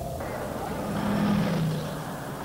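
A motor vehicle engine running with road noise; its low hum swells about a second in and then eases.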